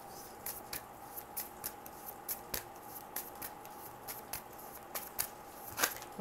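A tarot deck being shuffled by hand: a run of quick, irregular card clicks and flicks.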